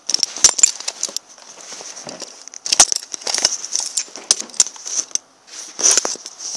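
Handling noise from a phone held in the hand: irregular scraping, crackling and clicking of fingers against the phone near its microphone, loudest about half a second and three seconds in, over a steady high hiss.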